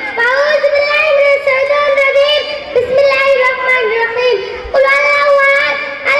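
A young girl's voice over a microphone, reciting in a sing-song chant on long, fairly level held notes, with a short break a little before five seconds.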